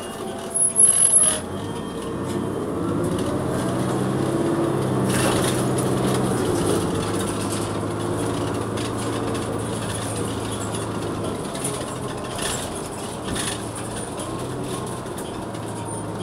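Cummins Westport ISL-G natural-gas engine of a New Flyer XN40 transit bus, heard from inside near the rear. Its note rises as the bus pulls away and accelerates, holds steady, then eases off about twelve seconds in. A short loud clatter sounds about a second in.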